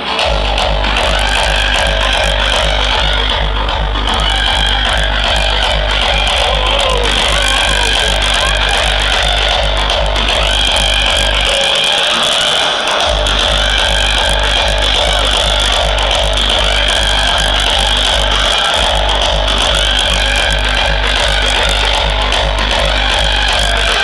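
Hardstyle dance music played loud over a festival sound system and recorded from within the crowd: a heavy kick drum on every beat, with sustained synth lines above. The kick drops out for about a second and a half a little before halfway, and for a moment again later on.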